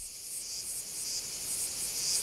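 Steady high-pitched chirring of insects on a film's soundtrack, growing a little louder toward the end.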